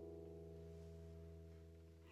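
Acoustic guitar chord ringing out and fading slowly, very faint by the end.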